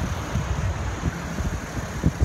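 Outdoor rumble of wind buffeting the microphone over the distant hiss of city traffic below, uneven and without any distinct event.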